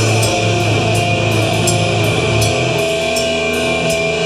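Live metal band playing loud: electric guitars over a strong low end and a drum kit, with frequent cymbal hits.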